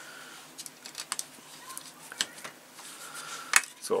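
Small plastic model-kit parts and a precision screwdriver being handled: a scatter of light clicks and taps as the battery-compartment block is fitted against a bulkhead wall, the sharpest click shortly before the end.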